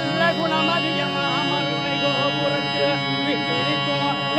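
Therukoothu accompaniment music: a steady, many-toned drone held under a wavering, ornamented melody line.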